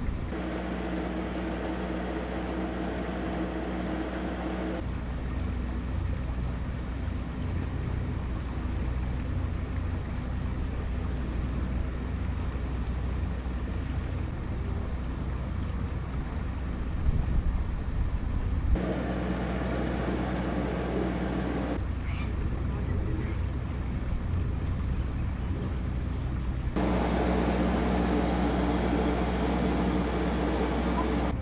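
Narrowboat's diesel engine running steadily while cruising, with wind rumbling on the microphone. The sound changes abruptly several times, and there are two sharp knocks about two-thirds of the way through.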